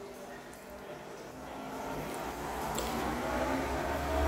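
A motor vehicle's engine rumbling, growing gradually louder as it comes closer, over faint background voices.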